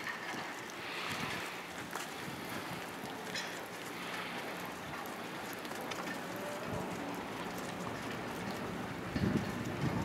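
Wind rumbling and hissing on the microphone outdoors, steady throughout, with a faint low hum and scattered light ticks underneath; a stronger gust comes near the end.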